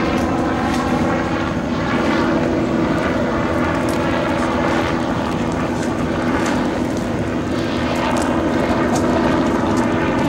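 Loud, steady drone of an airplane's engines flying overhead, a continuous hum with a slowly shifting whoosh.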